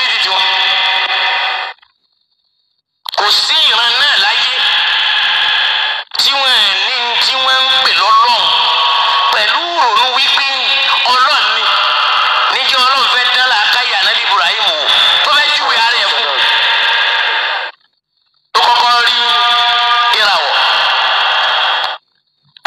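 Speech in Yoruba, a voice sounding thin and narrow like a radio, broken by two short silent gaps, about two seconds in and near the end.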